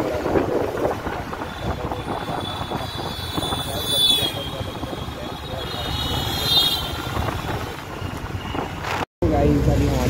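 Motorbike ride through town traffic: engine running with steady road and wind noise on the handlebar-mounted microphone. A high wavering tone sounds twice in the middle, and the sound cuts out briefly about nine seconds in.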